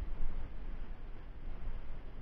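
Low background rumble with faint handling noise from small plastic solenoid parts being turned over in the hands.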